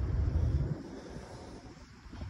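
Wind buffeting the phone's microphone, a low uneven rumble that is strongest in the first half second or so and then dies away.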